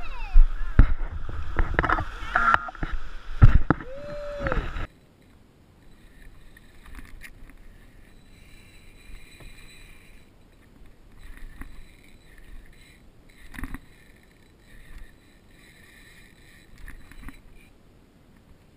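Small waves washing in at the water's edge, with wind buffeting the microphone and a few voices. About five seconds in the sound cuts off abruptly, leaving only a faint, quiet background.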